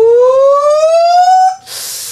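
A man's long falsetto "ooooh" of excitement, rising steadily in pitch for about a second and a half, followed by a short hiss near the end.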